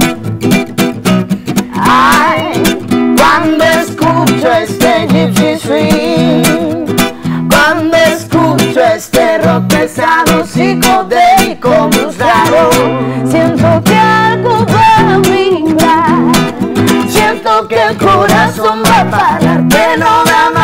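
Nylon-string acoustic guitar strummed briskly in a steady rhythm, with a woman singing over it and the guitarist joining in on vocals.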